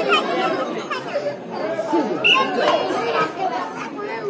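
Crowd of spectators around a hadudu match chattering and calling out, many voices overlapping at once.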